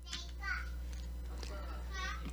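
Faint, distant voices, a few short calls, over a low steady hum.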